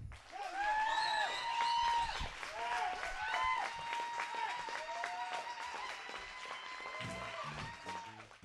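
Audience clapping and cheering, with pitched whoops rising and falling over the applause.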